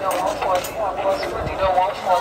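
People talking close by in a busy open-air market, several voices overlapping, with a couple of dull low thuds about one and a half seconds in.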